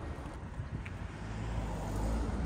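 A car driving by on a city street, its low rumble growing louder toward the end.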